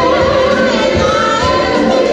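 Live musical-theatre cast singing in full chorus with band accompaniment, a big ensemble number.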